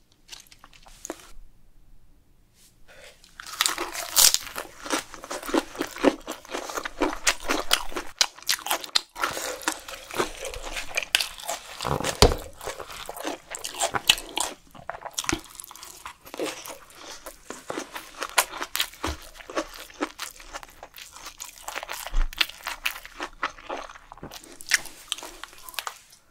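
Close-miked chewing of a lettuce wrap of grilled webfoot octopus in sauce: wet, crisp crunching and smacking, steady and irregular, starting about three and a half seconds in.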